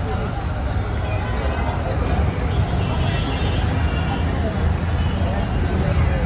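Busy street ambience: a steady traffic rumble with people's voices in the background.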